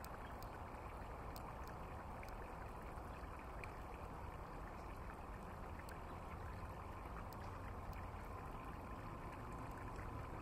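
Steady, faint outdoor background noise with no distinct event. A faint steady hum comes in during the second half.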